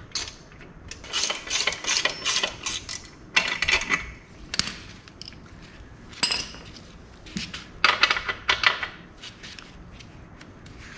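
Metal hand tools clinking and clattering in several short bursts of sharp clicks, as they are handled while the motorcycle's rear wheel is being taken off.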